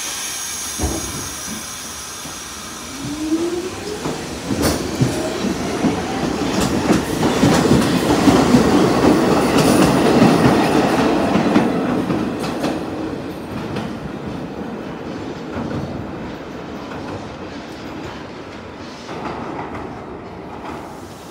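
New York City Subway R46 train pulling out of the station: its traction motors whine, rising in pitch over a few seconds. Then the wheels clatter and click over the rail joints. The sound is loudest about halfway through and slowly fades after.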